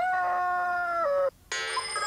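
A rooster crowing: one long held crow that drops in pitch and cuts off a little past a second in. Near the end comes a short, bright ringing tone.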